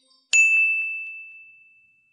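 A single bright ding sound effect about a third of a second in: one high tone that rings out and fades over about a second and a half.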